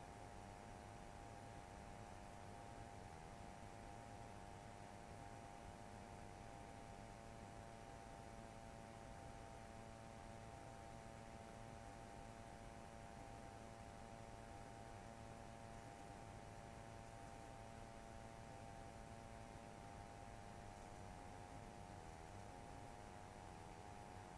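Near silence: a faint steady hum with hiss.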